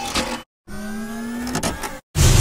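Sound-effect whine of a small electric motor, starting after a brief cut to silence and rising slightly in pitch for about a second, followed by a short crackle near the end.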